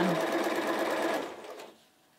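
Bernina 1230 sewing machine stitching a straight seam through fabric at a steady speed, then winding down and stopping about a second and a half in.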